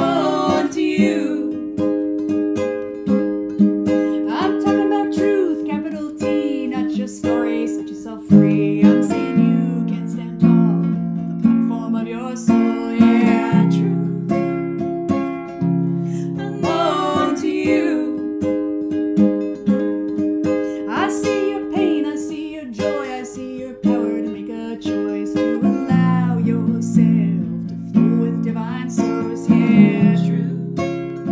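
Nylon-string classical guitar played under two women's voices singing together: a slow acoustic song with held bass notes changing every second or two.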